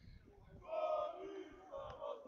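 Serbian football supporters chanting together in the stands, a drawn-out call of several voices starting about half a second in.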